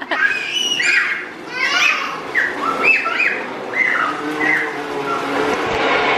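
A young child's high-pitched squeals and babbling, in a string of short rising-and-falling cries.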